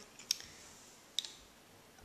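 Two short, sharp clicks about a second apart, over quiet room tone.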